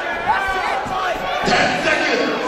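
Boxing crowd shouting and calling out over one another at ringside, with a thud about one and a half seconds in.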